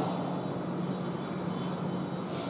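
Steady low hum with a faint even hiss: the room's background noise between spoken phrases.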